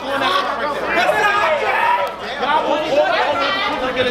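Crowd chatter: many voices talking and calling out over one another, with no music playing.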